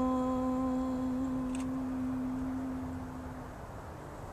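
A woman's voice holding a long chanted "Om" on one steady pitch, closing a Sanskrit Ganesha mantra; the tone fades out about three and a half seconds in.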